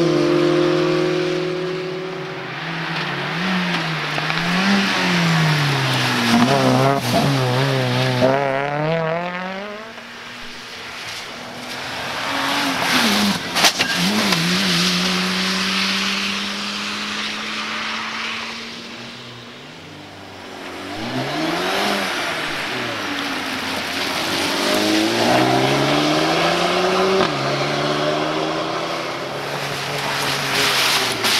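Rally cars accelerating hard one after another, each engine revving up and dropping back with every gear change, the sound swelling and fading as one car goes and the next arrives.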